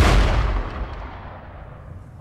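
A single loud gunshot boom, its echo dying away over about a second and a half.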